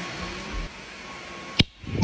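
Samsung Bespoke Jet cordless stick vacuum running with a steady rushing hiss and a faint whine. About one and a half seconds in, a sharp knock as the phone filming it is bumped over.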